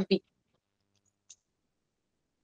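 A woman's voice ends a word right at the start, then near silence broken by a single faint computer mouse click about a second and a quarter in.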